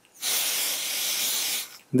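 Aerosol brake cleaner sprayed in one continuous burst of about a second and a half into the cast-metal base of a hand air pump, a steady hiss that stops abruptly, to clean out old grease and dirt.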